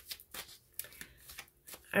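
Tarot cards being shuffled and handled: a run of quick, light clicks.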